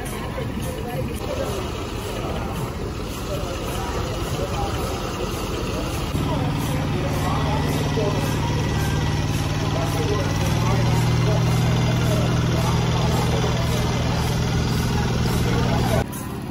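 Crowd chatter, joined about six seconds in by the steady hum of the tractor engine that hauls the kavadi float, which grows louder close by about halfway through.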